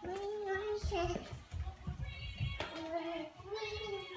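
Music with a high, child-like voice singing long held notes, over irregular low thuds of small feet stamping on a tile floor.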